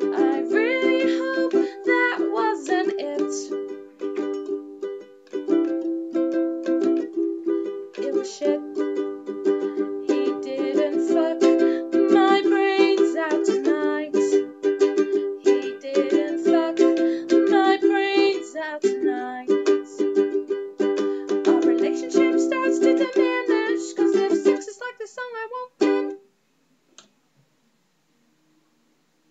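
Ukulele strummed in chords with a woman singing over it; the song stops about two seconds before the end.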